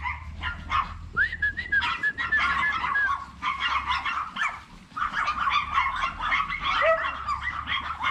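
Several chihuahuas yapping and barking over one another in aggression at a newcomer dog, with a long high whine about a second in and a brief lull near the middle.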